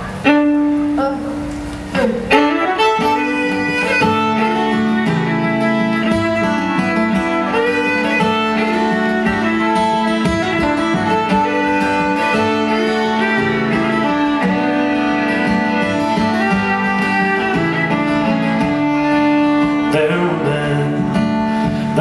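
Instrumental introduction to an Irish folk song played live: a fiddle melody over strummed acoustic guitar, with uilleann pipes holding long notes underneath.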